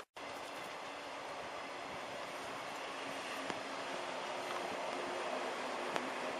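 Electric passenger train running past, a steady rumble of wheels on rails that slowly grows louder. Faint steady motor tones join in about halfway through.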